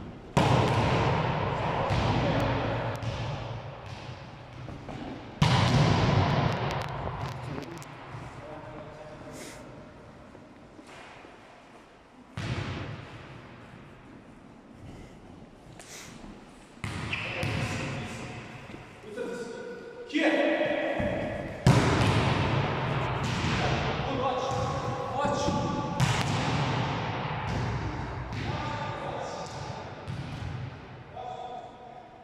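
A volleyball being spiked hard over and over, each sharp smack of hand on ball ringing out in a long echo around a large gym hall.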